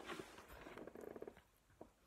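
Faint rustling and small knocks of a hand reaching for and gripping the phone that is recording, heard close on its microphone. Near silence otherwise.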